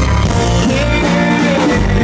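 Live rock band playing at full volume: electric guitar over bass and drums, with a male voice singing a gliding line in the middle.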